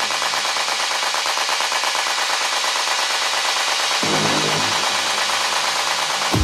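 Techno in a breakdown: a fast, rattling roll of percussion and noise with the kick and bass cut out, and a short low synth stab about four seconds in.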